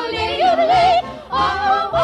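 A show-tune recording: yodeling singing with quick wavering pitch flips over instrumental backing.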